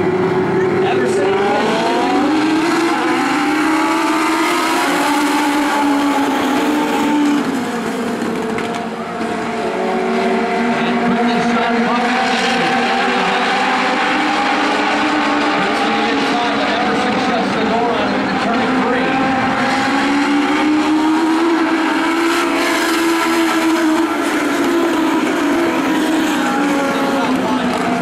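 A pack of Legend race cars running at racing speed, their Yamaha motorcycle engines revving high and overlapping. The pitch climbs as they accelerate and sags as they back off, swelling and fading as the field passes.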